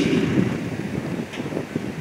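Low, rumbling background noise of an outdoor public-address setting in a pause between sentences: the echo of the voice fades out in the first second, leaving a steady low rumble like wind on the microphone.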